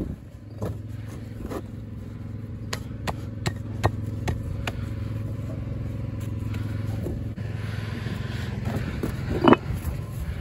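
An engine runs steadily underneath, with scattered clinks and knocks of Cotswold stone and tools handled on wooden scaffold boards. A louder knock comes near the end.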